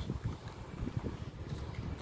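Wind buffeting a phone's microphone outdoors: a low, irregular rumble.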